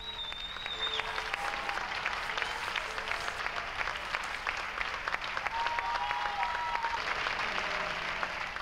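An audience applauding steadily, a dense patter of many hands clapping, with a couple of faint thin held tones above it.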